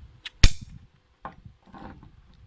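A single sharp, loud snap from the web belt's hardware, followed by a lighter click and a short rustle of the nylon webbing as the belt is handled.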